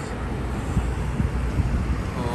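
Wind buffeting the phone's microphone outdoors: an uneven low rumble with gusty thumps through the middle.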